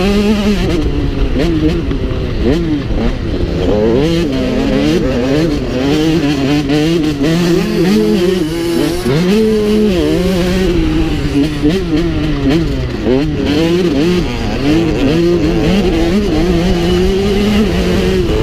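Motocross bike engine revving hard and continuously, its pitch rising and falling every second or so with throttle and gear changes, heard up close from the rider's own bike.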